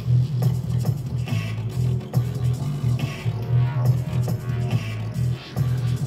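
Dub track playback at a slow 70 bpm: two squelchy bass synth lines playing off each other over a drum groove, the sound heavy in the low end.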